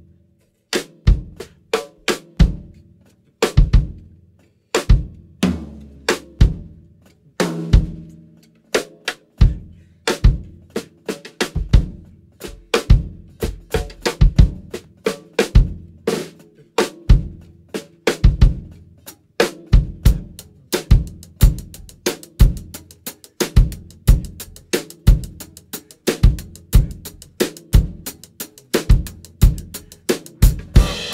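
Drum kit playing the song's instrumental intro: kick drum, snare and rimshots, with low bass notes under them. The hits are sparse and uneven at first, then settle into a steady, busier beat about ten seconds in.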